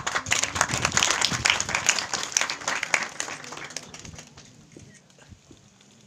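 Audience applauding, loud for about three seconds and then dying away by about four and a half seconds in.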